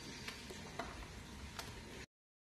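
Faint clicks of a small knife slicing through peeled sponge gourd held in the hand over a steel bowl, about four light ticks in two seconds.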